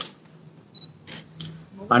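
A pause in a man's speech over a public-address microphone, holding quiet room tone with a brief high beep and a few faint clicks about a second in. His voice resumes just at the end.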